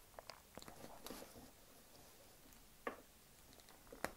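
Near silence with a few faint clicks and one sharper click of plastic parts being handled: the head of a Marvel Legends Hela action figure being pulled off and swapped.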